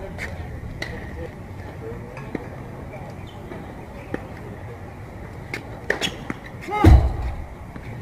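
Scattered sharp pops of tennis balls bouncing and being struck on outdoor hard courts, over murmuring voices and a low outdoor rumble. Near the end comes a louder low thump with a brief voice.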